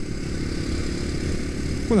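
Engine of a 250cc single-cylinder trail bike running steadily at cruising speed, with the low rumble of wind and road noise on the helmet-mounted microphone.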